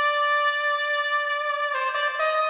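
Music: a single long note held steadily on a wind instrument, moving to a new note near the end.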